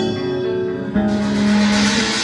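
Live metal band playing: guitar notes ring and are held. About a second in, a new low note is struck and sustained while a bright, noisy wash swells above it.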